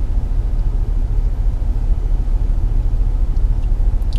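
Steady low rumble of a 2016 GMC Yukon Denali's 6.2-litre V8 idling, heard from inside the cabin.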